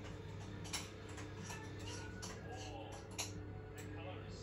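Light, irregular ticks and crinkles of a wet plastic cover under a cat's paws as it walks across it, about eight small clicks over four seconds.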